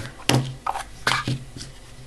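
Plastic back cover of a YX-1000A analog multimeter being opened by hand to fit a battery: a few sharp plastic clicks in the first second and a half, then quieter handling.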